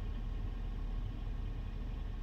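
Steady low rumble inside a car's cabin from the engine idling.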